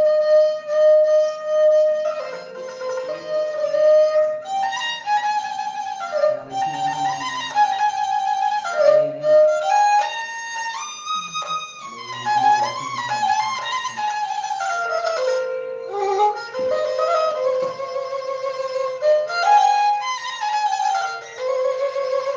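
Balochi instrumental music: a suroz, the bowed Balochi fiddle, plays an ornamented melody full of slides between notes, over a softer low accompaniment.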